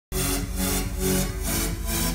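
Music with a steady bass line and a beat a little over twice a second, played through a 5.1 home theater speaker system and picked up in the room.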